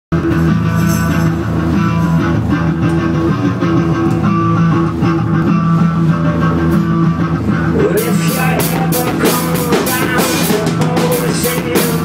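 Live rock band opening a song: an electric guitar holds a sustained, droning chord, and the drum kit comes in with a steady beat about eight seconds in.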